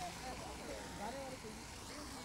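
Faint, indistinct chatter of several people talking in the background over a low steady rumble.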